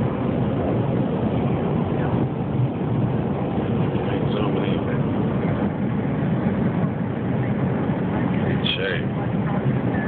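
Steady rush of airliner cabin noise in flight, with brief faint voices about four seconds in and again near the end.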